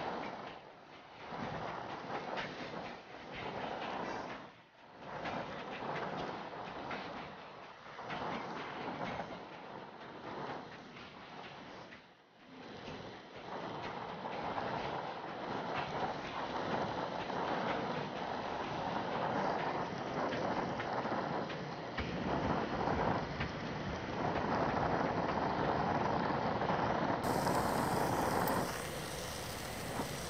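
Lampworking bench torch burning with a rushing hiss while glass is worked in its flame, rising and falling in level and dropping away briefly twice.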